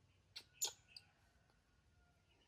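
Newborn baby monkey giving three short squeaks in quick succession around half a second in, the middle one loudest and falling in pitch.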